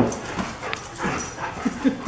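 Dogs at play, giving several short whimpers and yips.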